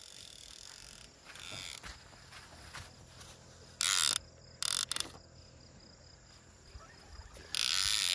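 Baitcasting reel's ratchet clicker going in two short bursts about four seconds in, then running on continuously from near the end as line comes off the spool.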